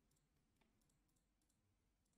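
Near silence: a dead-quiet pause in a screen-recorded voice-over.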